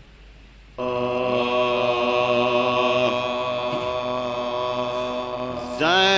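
Unaccompanied soz recitation: about a second in, a vocal drone starts on one steady held note. Near the end, a louder solo voice comes in over it with a wavering, ornamented melody.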